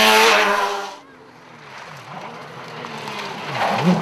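A small rally car passes close at high revs with a loud, steady engine note. About a second in, this cuts abruptly to a quieter, more distant rally car whose engine revs drop and climb again several times, as with lifting off and gear changes.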